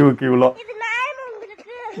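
A young boy talking in a high-pitched, whining voice.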